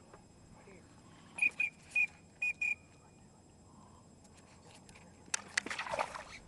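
Teal calls: five short, high whistled peeps in quick succession. Near the end come rustling and handling noises.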